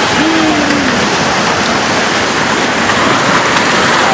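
Loud, steady rushing of a flood of water and mud flowing past, with a short, slightly falling tone near the start.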